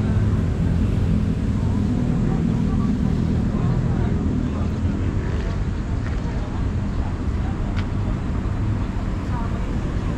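A car engine idling steadily with a low rumble, with wind on the microphone.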